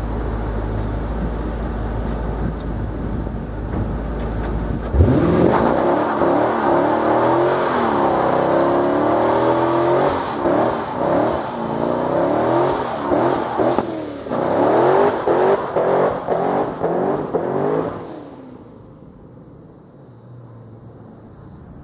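Twin-turbocharged LS2 V8 of a 2005 Pontiac GTO. It idles with a low rumble, then about five seconds in it suddenly revs hard for a burnout, its pitch sweeping up and down. It then gives a run of rapid repeated revs before the throttle drops off near the end.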